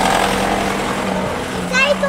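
Ford Transit van's engine running as the van drives past close by, a steady low hum.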